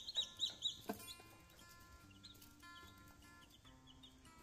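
Newly hatched chicks peeping: a quick run of high peeps at about four a second that fades about a second in, leaving fainter, scattered peeps. A single sharp click comes as the run fades.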